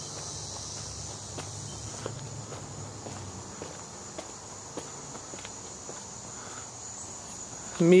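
Steady high-pitched chorus of insects in the background, with light footsteps about twice a second on pavement.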